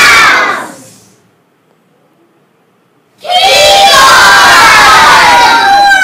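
A group of kindergarten children shouting together, very loud: one group shout dies away about half a second in, and after a short quiet gap a second long group shout starts about three seconds in and runs to the end.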